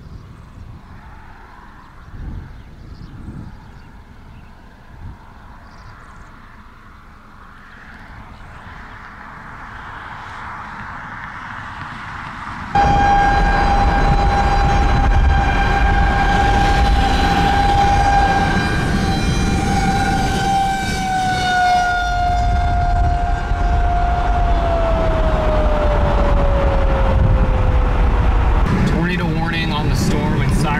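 Outdoor warning siren sounding for a tornado warning, heard from a moving car over road noise. It starts abruptly about halfway through, holds one steady wailing pitch, then slides slowly lower over the last few seconds. Before it there is only quiet open-air background.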